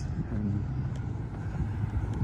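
Low, steady rumble of a motor vehicle running nearby in street traffic.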